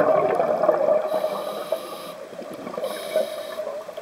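Scuba diver breathing through a regulator underwater. A rush of exhaled bubbles fades over the first second or so, then two short high hisses come about a second apart.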